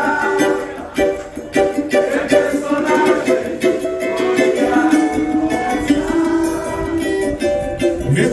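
Cavaquinho strummed and picked over a PA in an instrumental passage of a samba song, a bright plucked-string melody with steady strokes.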